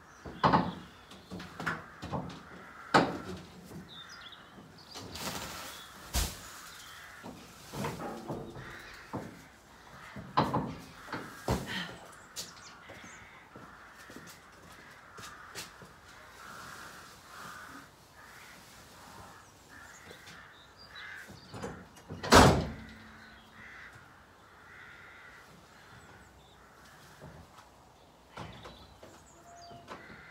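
Knocks and thumps from round straw bales being shifted by hand off a pickup truck, several in the first half and the loudest a single sharp knock about two-thirds of the way through. Crows caw repeatedly in the background, mostly in the second half.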